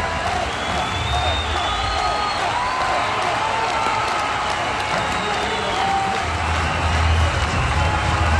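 A large football-stadium crowd cheering and whooping, with music playing over the stadium PA whose deep bass grows louder near the end.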